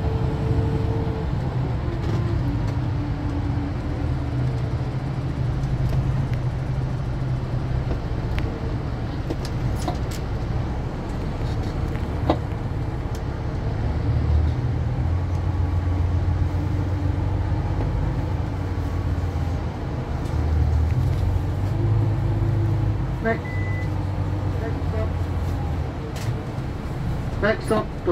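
Coach engine and road noise inside the passenger cabin: a steady low drone whose pitch shifts a few times as the coach changes speed. A short high beep and a few light ticks come near the end.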